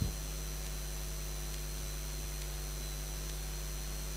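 Steady electrical mains hum on the briefing's microphone and PA feed, a low 50 Hz buzz with its overtones, under a thin, faint high whine.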